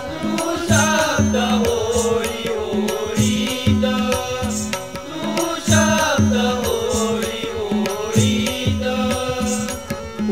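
Marathi devotional abhang music without words: a wavering melodic instrumental line over a steady hand-drum rhythm with regular cymbal strikes.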